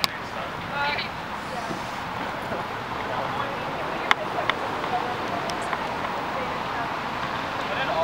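Outdoor ambience of a sports field: a steady wash of traffic noise with distant voices of players, and a few sharp clicks, the loudest about four seconds in.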